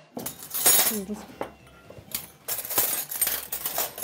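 Tableware being set on a dining table: plates, glasses and cutlery clinking and knocking together in a quick, irregular run of sharp clinks.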